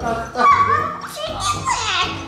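A young girl squealing and laughing in high, sliding cries, with a sharp rising squeal near the end.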